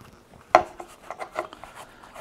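Tabletop handling noise as a small plastic line spool is fitted into a neoprene koozie sleeve on a wooden table. One sharp knock comes about half a second in, then a few light clicks and the rustle of neoprene rubbing over the spool.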